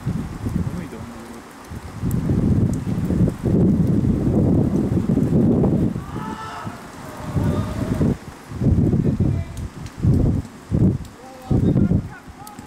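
Wind buffeting the microphone in irregular gusts, low and rumbling, with a brief shout from a person about six seconds in.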